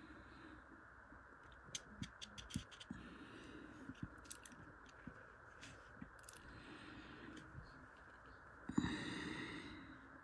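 Faint ticks and light scratches of a fine-liner pen on a paper tile, with a cluster of small sharp ticks early on. Near the end comes a louder scrape lasting about a second as the hand and pen move across the paper.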